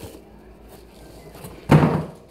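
A single dull handling thump near the end, after a second or so of faint rustling and light clicks.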